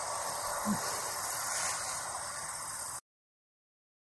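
Steady outdoor background hiss with one brief low sound under a second in; it cuts off abruptly to dead silence about three seconds in.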